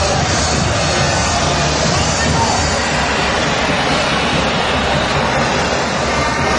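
Loud, steady stadium crowd noise mixed with music.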